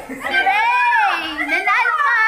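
Excited high-pitched voices of a group of people squealing and calling out in long cries that swoop up and down in pitch.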